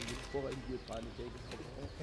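Faint speech from a man, well below the loud speech on either side, over quiet hall room tone.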